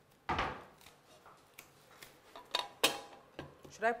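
Pots and dishes handled on a kitchen counter and stove: a dull thump about a third of a second in, then a few sharp clinks, the loudest ringing briefly near three seconds in.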